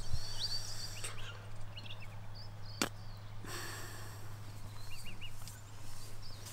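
Quiet tent ambience: a steady low hum with faint short high chirps from outside, three in quick succession near the end, and one sharp click a little before the middle.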